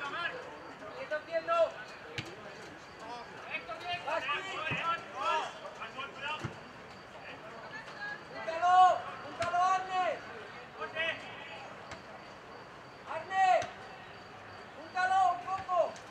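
Men shouting calls across a football pitch during play: several short, loud shouts, the loudest coming in the second half, with a few sharp knocks in between.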